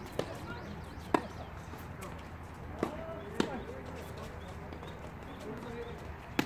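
Tennis ball struck by rackets and bouncing on a hard court during a doubles rally. There are sharp pops, the loudest about a second in and two more around three seconds in.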